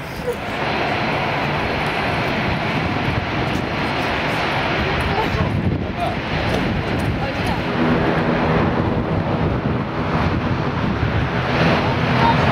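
Loud, steady aircraft engine noise, building a little and taking on a faint hum in the second half.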